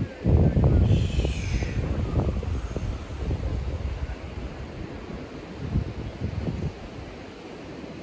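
Wind buffeting the microphone: a low rumble, strongest in the first couple of seconds, then easing into a steady wash of wind and surf.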